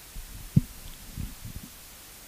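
A few dull, low thumps over a faint steady hiss, the sharpest about half a second in and softer ones following over the next second.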